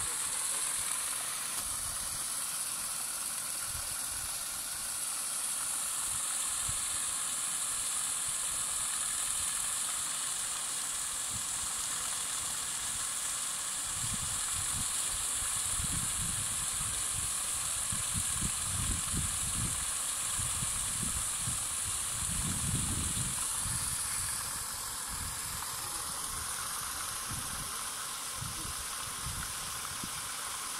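Solar-powered paddle wheel aerator churning pond water: a steady hiss of splashing spray from the turning paddle wheel.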